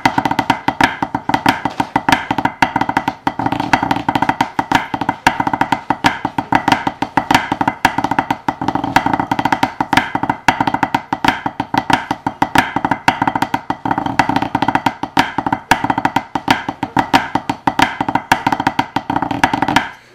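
Drumsticks on a practice pad playing a fast pipe-band snare-drum score: a dense, unbroken run of strokes and rolls with a steady ring under them, stopping abruptly at the end.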